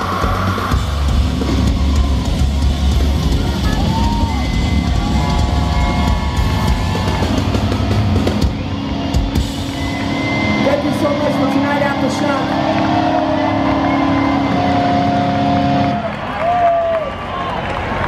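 Live rock band playing loudly with heavy drums and bass up to about eight seconds in. Then a long held, ringing chord with voices shouting over it, cutting away near the end.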